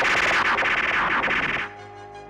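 Synthesized magic-power sound effect as He-Man gives up his power through the raised Sword of Power: a loud, dense crackling burst that cuts off suddenly about a second and a half in, leaving soft sustained music chords.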